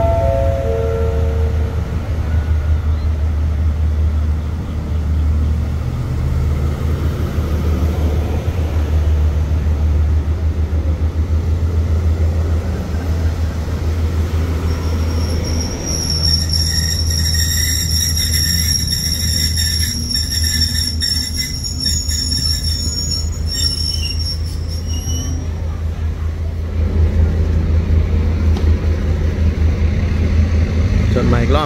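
A passenger train moving along a station platform, with a steady low diesel rumble. From about halfway in, its wheels squeal high and metallic for around ten seconds. A short descending four-note chime sounds right at the start.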